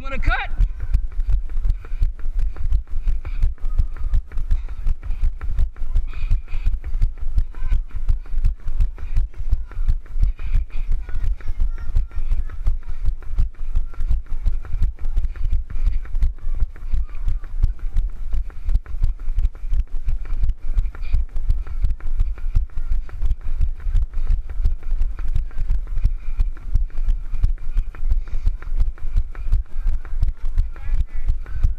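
Running footsteps jolting a body-worn action camera: a quick, even rhythm of low thumps that goes on without a break.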